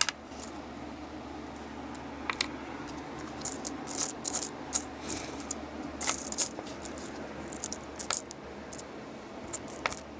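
Lincoln pennies clinking and clicking against one another as they are picked up and pushed around a pile on a cloth. The clicks come in short irregular clusters, with gaps between them.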